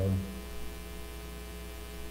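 Steady electrical hum with many evenly spaced overtones, unchanging throughout, with the tail of a man's spoken word at the very start.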